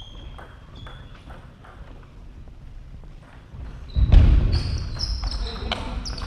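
Table tennis play on a wooden sports-hall floor. There are light, scattered ball ticks at first, then from about four seconds in a rally with sharp ball clicks, shoes squeaking briefly on the floor and a heavy thud of footwork.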